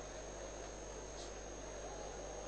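Faint, steady background noise: a constant thin high-pitched whine over hiss and a low hum, typical of the electronic noise of a sound system or recording.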